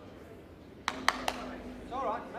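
Indoor bowls knocking together: three sharp clacks in quick succession about a second in.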